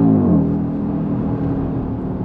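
2020 Audi RS Q3's turbocharged five-cylinder engine at high revs under acceleration; about a quarter of a second in, its pitch drops sharply, and it then runs steadily at lower revs.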